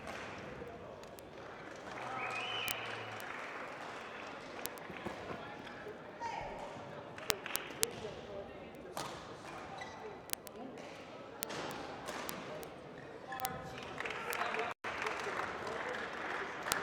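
Large sports-hall ambience during a break in play: a background murmur of voices, with scattered sharp clicks and knocks of shuttlecock hits and footwork from play on neighbouring badminton courts.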